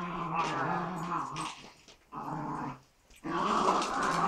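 A small dog growling in long, low grumbles: one of nearly two seconds, a short one in the middle, and another starting near the end.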